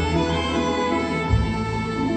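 A Russian folk-instrument orchestra plays an instrumental passage of a slow song: a sustained melody over low bass notes, with a new bass note coming in about a second and a half in.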